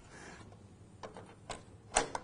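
A few faint, short clicks and knocks of parts being handled, with a sharper click near the end.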